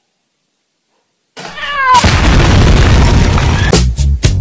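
Silence for over a second, then a cat's short meow, followed at once by a loud explosion-like blast of noise lasting nearly two seconds. Music with a beat starts just before the end.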